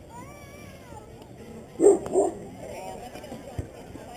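A dog barking twice in quick succession.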